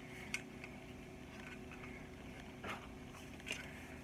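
Faint handling sounds of LED wires being pulled through a plastic model part: a few small clicks and rustles over a low steady hum.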